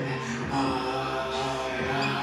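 A man singing long held notes into a handheld microphone, amplified over music.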